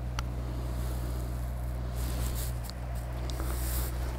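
A golf putter striking the ball once with a short, light click about a fifth of a second in, over a steady low hum.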